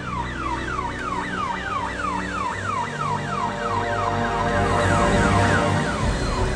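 Electronic ambulance siren wailing in rapid falling sweeps, about three or four a second, growing louder toward the end, over a background music bed.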